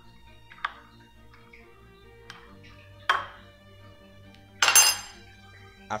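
A metal spoon and a mesh strainer knocking against a ceramic bowl: a few separate clinks, the loudest a ringing clink about five seconds in, over quiet background music.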